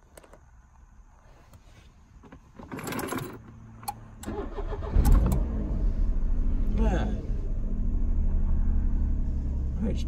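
Car engine cranked over and catching about five seconds in, then idling steadily.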